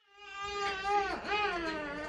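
Baby fussing: two long whining cries with a wavering pitch, the first fading in and the second following a brief dip about halfway through.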